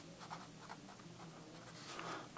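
Sharpie pen writing on paper: the faint scratching of its tip as a word is written out.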